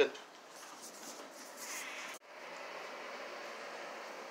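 The last word of speech at the very start, then faint background noise that cuts off abruptly about two seconds in, replaced by a steady faint room hum.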